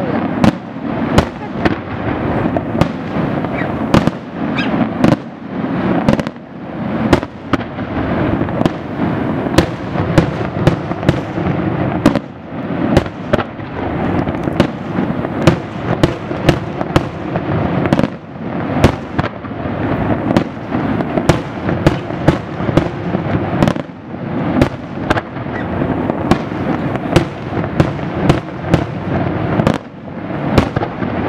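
Aerial fireworks display: a continuous barrage of shells bursting, sharp bangs following one another several times a second over a dense, unbroken crackling rumble.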